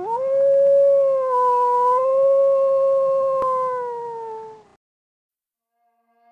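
One long canine howl: it rises quickly at the start, holds a steady pitch for about four seconds, then sags in pitch and fades out.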